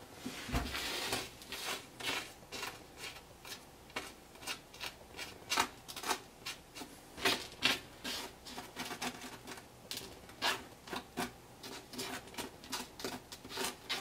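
Fine Woodland Scenics rock debris being rubbed between fingertips and sprinkled onto a glued baseboard, making an irregular run of small patters and rubbing ticks.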